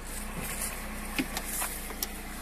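Lada 4x4 Urban's four-cylinder engine idling steadily, with a few faint rustles and ticks of footsteps through dry grass.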